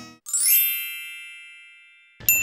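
A single bright chime sound effect: a quick upward shimmer into a ringing, bell-like tone that fades away slowly over about a second and a half. Acoustic guitar music cuts off just before it.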